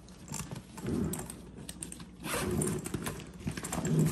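A nylon roller bag being handled as a pocket is opened: metal zipper pulls clink and jingle amid fabric rustling and the rasp of a zipper, in a run of small irregular clicks and swishes.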